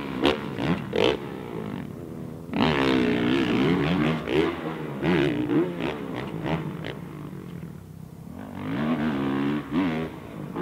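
Motocross bike engine revving up and down as the rider works the throttle through the jumps, its pitch rising and falling again and again. It is loudest a couple of seconds in, drops away past the middle and picks up again near the end.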